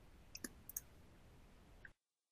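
Near silence: faint room tone with two pairs of light clicks, like a computer mouse being clicked, in the first second. The sound then cuts off abruptly to dead silence just before the end.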